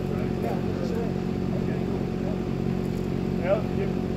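Mini excavator's diesel engine running steadily at a constant pitch, with faint voices in the background.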